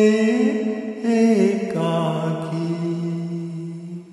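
Closing bars of a Hindi film song sung to karaoke backing: long held notes that shift pitch twice, then fade away as the song ends.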